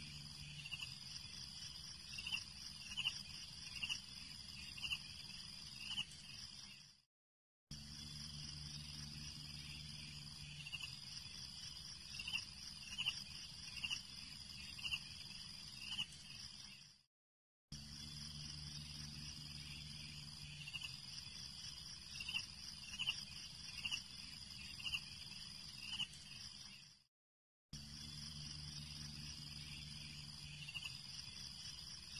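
Faint looped insect ambience, like crickets at night: a steady high drone with a run of chirps a few seconds into each pass. It repeats about every ten seconds and cuts out briefly between passes.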